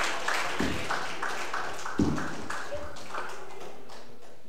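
Audience clapping, in scattered sharp claps a few times a second that fade out steadily.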